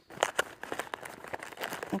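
Plastic zip-top bag of trail mix crinkling and rustling as it is handled and drawn out of a zippered snack pouch, with irregular small clicks.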